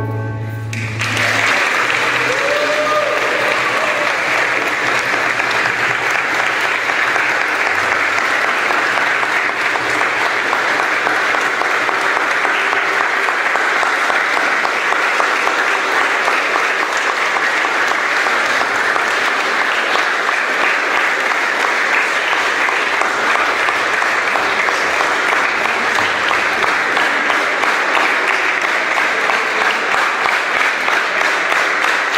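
Congregation applauding steadily and at length, right as the last notes of a wooden xylophone ensemble stop.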